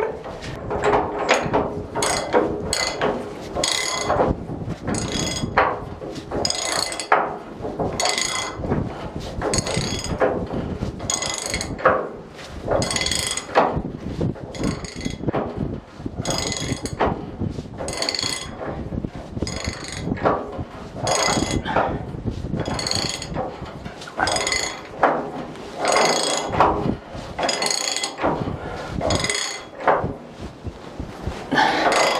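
Socket ratchet clicking in short bursts, about one stroke a second, as a bolt holding a winch base down to the deck is tightened.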